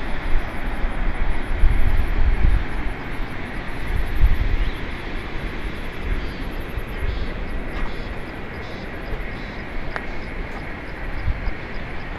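Wind buffeting the microphone in low gusts over a steady rushing background; the gusts ease after about four seconds.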